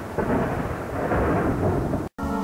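Thunder sound effect: a dense rolling rumble, with a fresh thunderclap swelling up a moment in.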